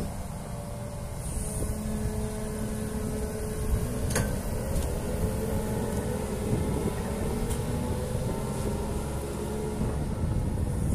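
Atlas 160W wheeled excavator's diesel engine running steadily as the machine drives off, with a faint whine over a deep rumble. A short knock comes about four seconds in.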